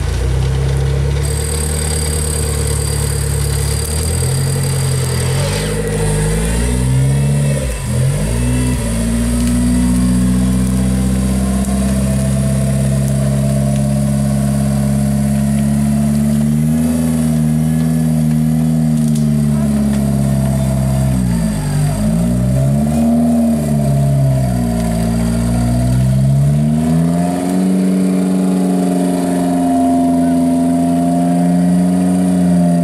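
Off-road vehicle's engine running hard at high revs, its pitch sagging and climbing back several times, with deep dips about eight seconds in and again a little past twenty seconds.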